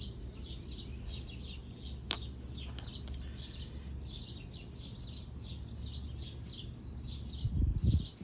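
Small birds chirping steadily, quick high calls several times a second, over a low rumble. A sharp click comes about two seconds in, and a brief low bump near the end.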